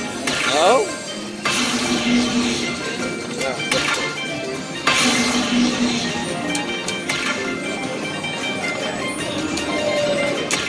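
Dragon Link slot machine playing its hold-and-spin bonus music and sound effects. The reels respin twice, about a second and a half in and again about five seconds in, as new coin symbols land and the spin count resets. There is a short falling sweep just under a second in.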